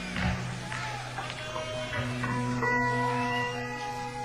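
Live electric band with amplified bass guitar and electric guitar playing long held notes. Low bass notes start about a quarter second in and again at two seconds, and steady high guitar tones sustain through the second half.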